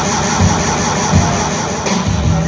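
Live rock band playing through amplifiers: low bass-guitar notes and drum hits pulsing about twice a second, with a steady cymbal sizzle above.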